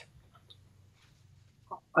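Quiet room tone with a faint low hum, broken near the end by a brief faint tone just before a man's voice comes in.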